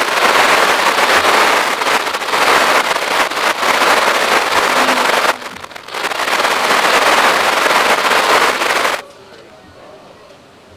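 Audience applauding loudly and steadily, with a brief dip about five seconds in, then cutting off sharply near the end.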